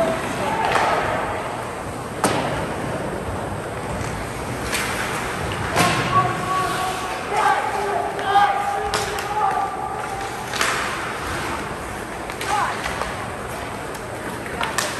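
Ice hockey play in a rink: several sharp knocks of sticks and puck against the boards and ice, with voices calling out around the middle.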